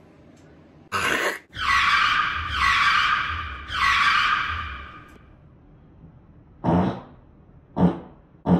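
Edited-in sound effects: a sharp noisy burst, then three falling whooshes of about a second each, then two short low bursts near the end.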